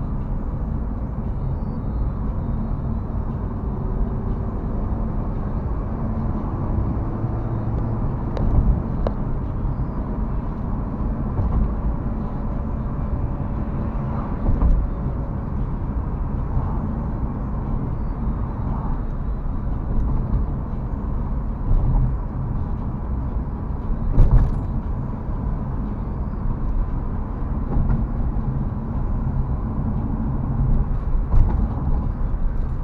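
Car driving, heard from inside the cabin: a steady low rumble of road and engine noise, with a few short thumps, the loudest about three-quarters of the way in.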